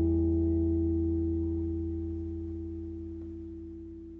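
Final chord of an acoustic guitar ringing out and fading away steadily, with no new notes played.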